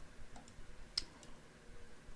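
A single sharp computer mouse click about a second in, with a couple of fainter ticks around it, against faint room tone.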